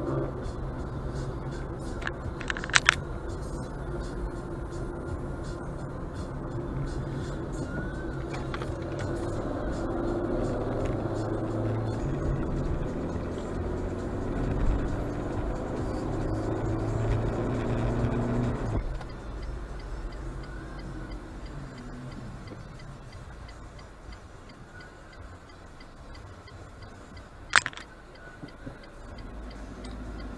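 Car interior sound picked up by a dashcam microphone: engine and road rumble with music playing. The sound drops abruptly to a quieter level about two-thirds of the way through, and there are two sharp clicks, one near the start and one near the end.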